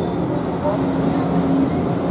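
Murmur of a crowd of people talking among themselves, many voices overlapping with no single clear speaker, over a steady low rumble.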